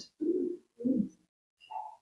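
A person's quiet two-part hum of agreement, like 'mm-hmm', with a brief higher sound near the end.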